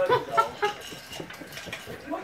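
Puppies giving a few short yips and growls as they tug at a plush toy, with their claws clicking on a tile floor. The sharpest sounds come in the first half-second, then lighter scuffling and clicking.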